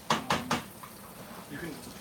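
A spatula tapped three times in quick succession against the rim of a stainless steel stockpot, sharp knocks with a short metallic ring.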